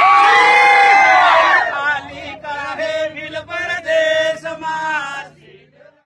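A group of male voices chanting in unison. It opens with one long, drawn-out call, then runs on in short rhythmic chanted syllables and fades out near the end.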